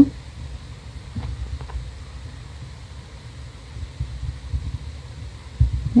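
Low steady background rumble with two faint clicks about a second and a half in.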